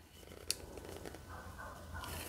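Faint handling of a glittered snowflake candle holder as it is pried at to snap the snowflake off, with one small click about half a second in over quiet room tone with a low hum. The snowflake is firmly attached and does not snap off.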